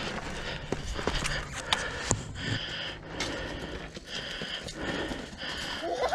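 Mountain bike rolling along a dirt trail: irregular knocks, clicks and rattles of the bike over bumps, with tyre noise on the dirt.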